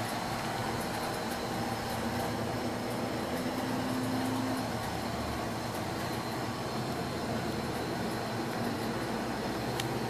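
Steady outdoor background noise, with a faint low hum that swells and fades between about one and five seconds in, and a faint click near the end.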